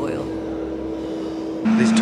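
Muffled road traffic and a lorry going past, heard through glass, over a steady low hum. The sound changes abruptly near the end.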